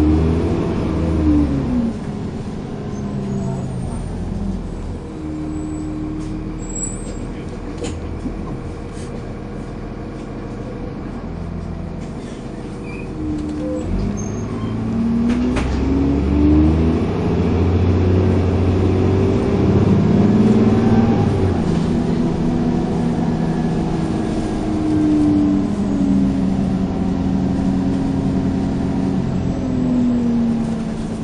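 Dennis Trident 2 double-decker bus engine heard from inside the lower saloon, working hard under acceleration. Its pitch rises and then drops back at each gear change. After a quieter spell, the engine pulls hard again from about halfway through, with a few knocks and rattles from the bodywork.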